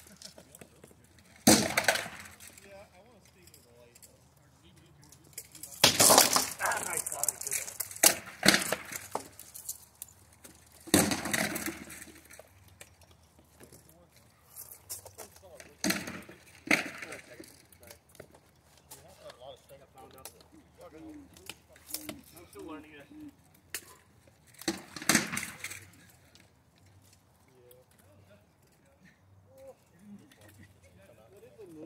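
Rattan swords striking shields and armor in SCA armored combat: short bursts of sharp cracks and clanks. The first burst comes about a second and a half in, a rapid flurry follows around six to nine seconds, and further exchanges come around eleven, sixteen and twenty-five seconds.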